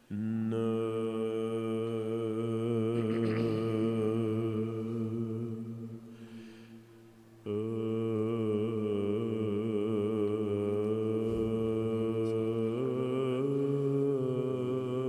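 Byzantine chant: slow, melismatic singing in long held phrases over a steady low drone (ison). One phrase fades out about six seconds in, and the next begins about a second and a half later, stepping in pitch near the end.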